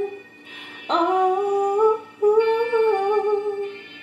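A woman's voice humming a wordless melody: a first phrase that opens with a quick upward slide about a second in, a short break, then a second held phrase that fades out near the end.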